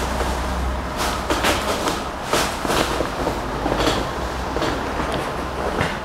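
A person shifting and settling onto a padded treatment table as he lies down on his back: several short rustling, shuffling noises over a steady low room hum.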